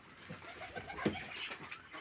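Van tumbler pigeons in a loft, cooing faintly.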